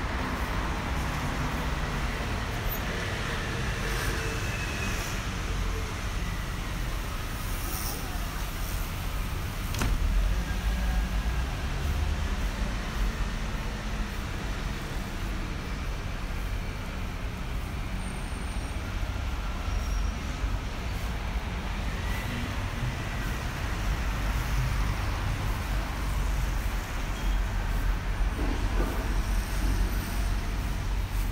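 City street traffic: cars and other vehicles passing with a steady low rumble, swelling a little about ten seconds in and again near the end.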